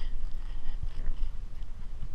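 A hand digger cutting and levering a plug of grass turf out of the ground, with a few faint knocks over a low rumbling noise.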